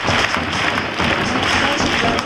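Stadium crowd clapping over music from the public-address system.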